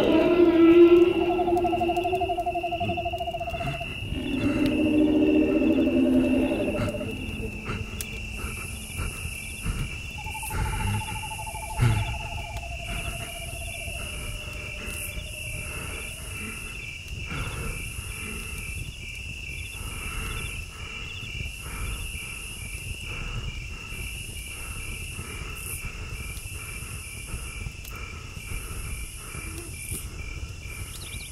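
Cricket-like insect chirping: a steady high trill with regular pulses. In the first half, several long held hooting tones sound, each at a different pitch.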